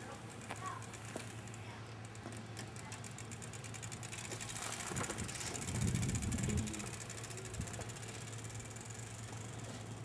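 Bicycle being ridden along an asphalt street, faintly heard over a low steady hum, with a louder low rumble a little past halfway.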